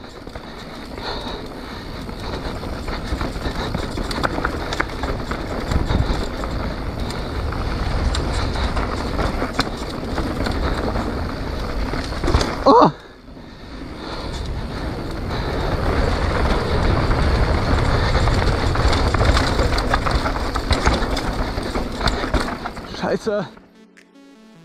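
Wind rushing over the microphone and mountain-bike tyres rolling over a dirt trail during a descent, a heavy rumbling noise that swells and eases. About 13 seconds in a short shouted exclamation cuts off suddenly, and the riding noise drops away just before the end.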